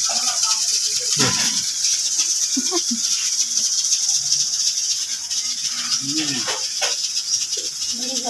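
Steady high-pitched rattling buzz of insects in the background, with a few short voice sounds and sharp clicks.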